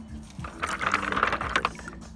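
Loose stones clattering and clicking against each other as a hand digs into a pile of rocks, a rapid rattle lasting about a second.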